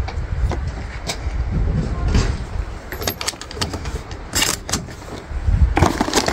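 Low steady rumble with a few scattered clicks and knocks as shotgun shells and gear are handled on a wooden table, the strongest cluster of knocks about four and a half seconds in.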